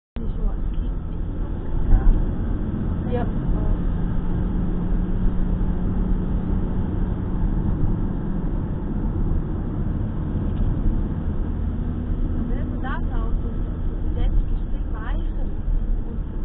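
Car cabin noise while driving: a steady low engine-and-road rumble with a constant drone that steps up in pitch about two-thirds of the way through.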